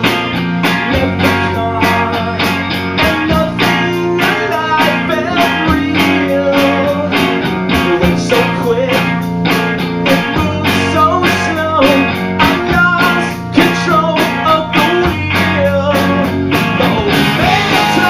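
Live rock band playing loud distorted electric guitars over drums with a steady, driving beat, in an instrumental passage without lyrics.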